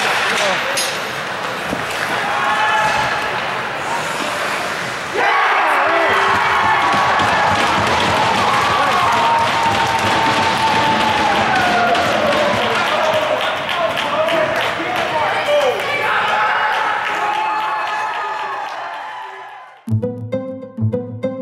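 Ice hockey game sounds: sticks, skates and puck clicking and knocking on the ice and boards under players' voices. About five seconds in, a loud burst of shouting and cheering starts up and carries on for most of the rest, thinning out and fading away near the end.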